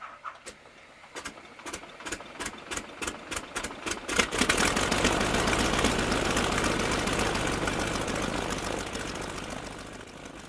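A piston engine starting: a run of separate firing pops that come faster and faster. About four seconds in it catches and runs steadily, then slowly fades away.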